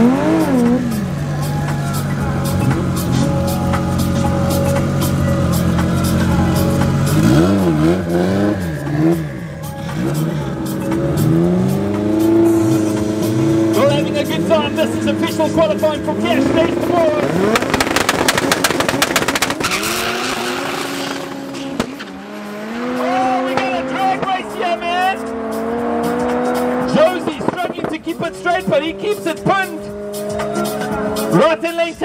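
Drag racing cars, one of them a Honda CRX, revving on the start line. They then launch and accelerate away down the strip, the engine note climbing in steps through the gear changes.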